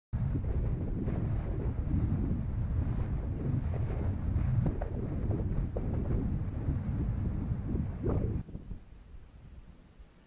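Wind buffeting the camera microphone: a heavy, gusty low rumble that cuts off suddenly about eight seconds in.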